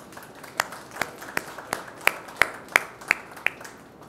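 Sparse hand clapping, evenly paced at about three claps a second, stopping shortly before the end.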